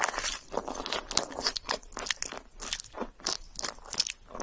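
Close-miked mouth sounds of biting and chewing roasted marshmallow with a caramelised crust: a quick, irregular run of small crackles and wet clicks.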